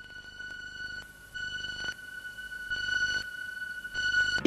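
Music from a home-video company logo: a high held tone that swells gradually in loudness, with a brief break about a second in.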